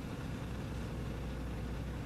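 Steady low hum with a faint hiss, unchanging throughout, with no distinct events.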